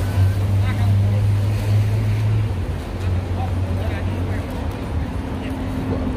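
Low, steady engine drone from a vehicle in street traffic. It stops about two and a half seconds in and comes back briefly, over general street noise and faint voices.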